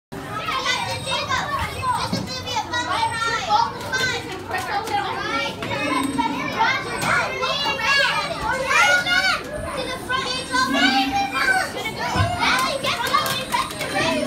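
Many children talking and calling out at once, their high voices overlapping without a break. A short low hum sounds three times under the chatter.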